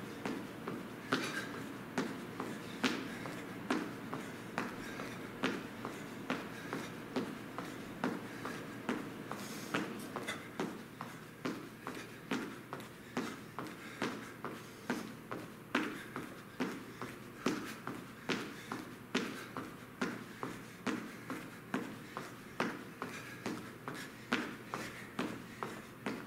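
Jumping jacks: sneakered feet landing on a gym floor in a steady rhythm, about three landings every two seconds.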